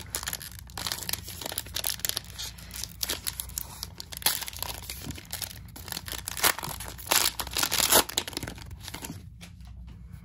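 Cellophane wrapper of a trading-card cello pack crinkling and tearing as it is worked open by hand, a run of sharp crackles with the loudest ones in the second half, thinning out just before the end.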